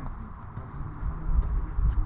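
Footsteps on foam bouldering crash pads: a few dull thuds, the heaviest about a second and a half in and near the end, over a steady low rumble.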